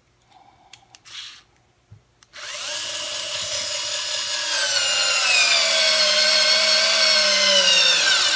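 WORX WX240 4V cordless screwdriver driving a two-inch screw into a wooden 2x4 with no pilot hole: a steady motor whine starts a little over two seconds in, then slowly drops in pitch and grows louder. Before it there are a few faint handling sounds as the screw is set on the bit.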